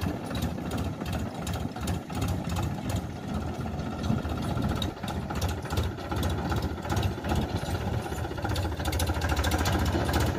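Powertrac Euro 50 tractor's diesel engine running steadily with a dense, even chugging while it pulls a trolley forward at low speed.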